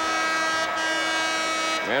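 Basketball arena horn sounding one steady, loud, flat-pitched blast of about two seconds, signalling a timeout. It cuts off near the end.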